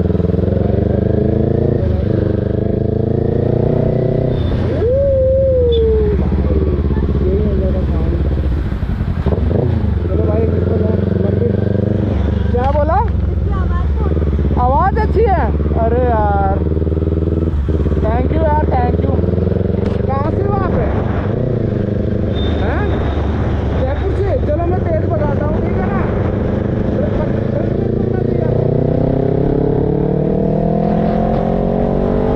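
Kawasaki Ninja ZX-10R inline-four sport bike engine running on the road. Its pitch climbs under acceleration and drops back at gear changes in the first few seconds, runs steadier in the middle and climbs again near the end.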